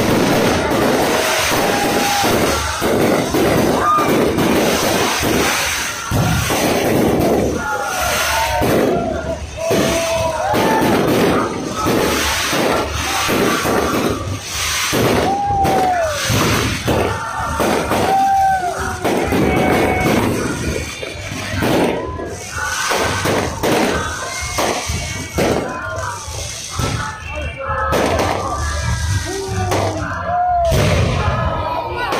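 Aerial fireworks going off in a rapid, continuous series of bangs and thuds, with a crowd's voices and exclamations over them.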